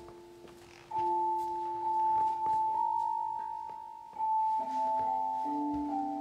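Gentle instrumental music of clean, bell-like sustained chords. A new chord is struck every second or few, and each fades away slowly.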